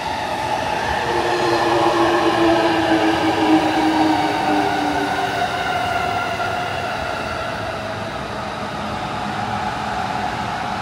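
Electric train passing on the tracks beside the path: its motors whine in several tones that slide slowly down in pitch over the running noise, loudest a few seconds in and then easing off.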